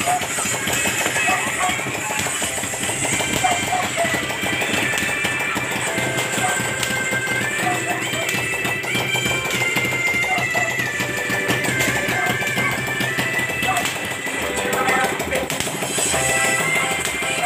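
Dense, rapid crackling of burning hand-held stick sparklers, with music playing, its melody stepping up and down.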